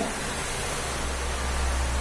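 Steady hiss with a low hum beneath it, an even background noise without distinct events.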